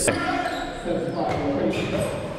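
A basketball being dribbled on a hardwood gym floor: a few sharp bounces, the clearest right at the start.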